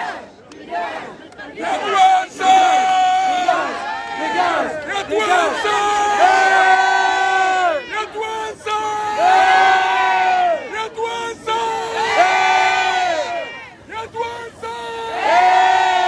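A crowd of protesters chanting slogans in unison, each loud chanted phrase repeating roughly every three seconds.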